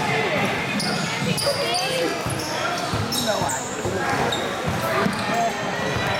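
Basketball bouncing on a hardwood gym floor and sneakers squeaking in short high chirps, over the steady chatter of spectators.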